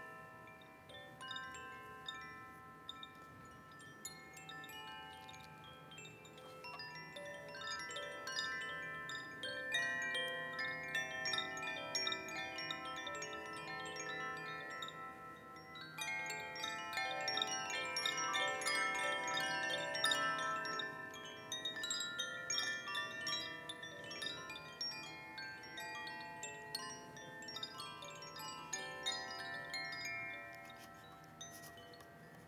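Hand-held cylindrical tube chimes shaken gently, giving a continuous shimmer of overlapping ringing tones. The sound grows fuller about halfway through, when a second chime joins the first.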